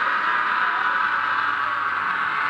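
Steady high, hissing drone from a guitar amplifier left ringing after the band's final hit, with no drums or bass under it.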